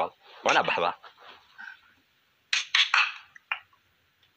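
Speech from a video call: a short spoken burst in the first second, then a few brief, sharp vocal sounds about two and a half seconds in, with low call-line background between.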